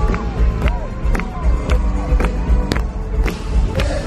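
Live synth-pop band heard from the audience in an arena: a synth melody gliding up and down over a steady deep beat, with a sharp drum hit about twice a second.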